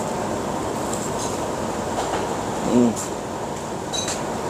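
Steady rumbling background noise, with one short voice-like hum about three quarters of the way through, the loudest moment.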